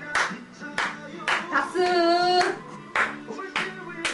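Music playing, with hands clapping along in a steady beat about twice a second. A voice holds one wavering sung note about two seconds in.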